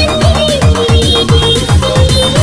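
Electronic dance music from a DJ remix mixtape: fast bass kicks that drop in pitch, about four a second, under a gliding synth melody.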